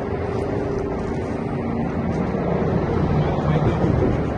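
A steady engine drone under a low rumble, swelling louder near the end.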